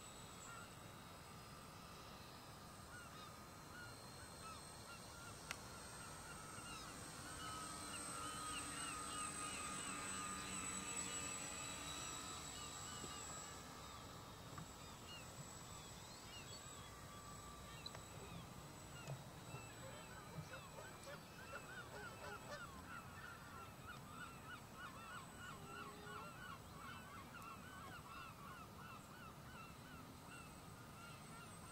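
Distant motors of a four-engined RC model flying boat, a scale Short S.26, passing by: the sound swells about eight seconds in, bends in pitch, and fades by about fourteen seconds. In the second half, a quick run of repeated short calls from birds sits over it.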